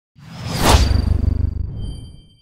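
Logo-reveal sound effect: a whoosh over a low rumble that swells to a peak under a second in, then fades away, leaving a thin high ringing tone.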